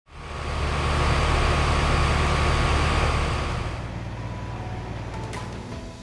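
A conventional central air conditioner's outdoor condenser unit running, a loud steady hum with fan noise. It drops to a quieter level a little under four seconds in and fades out near the end.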